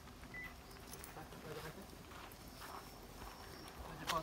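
Faint footsteps crunching on a gravel path, a few soft irregular steps.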